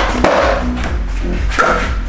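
Skateboard landing a flip trick on a concrete floor: a sharp clack of the board about a quarter second in, then the wheels rolling, with a second sharp sound near the end. Background music with a steady bass plays underneath.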